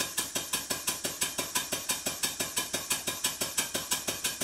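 Stuart 5A model steam engine running on compressed air, giving an even run of sharp exhaust beats, about seven a second. Each beat carries a slight clunk from the slide valve, made louder by the soundboard the engine stands on.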